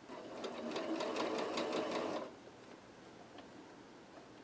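Singer Quantum Stylus computerized sewing machine running a short burst of stitching, with an even ticking of the needle over the motor hum. It stops after about two seconds.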